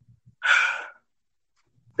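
A man's audible breath into the microphone, one short rush of air lasting about half a second, in a pause between his words.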